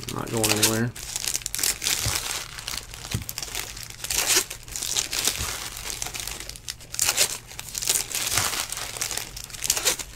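Foil trading-card pack wrappers crinkling and tearing as packs are ripped open by hand, in repeated bursts of bright crackle.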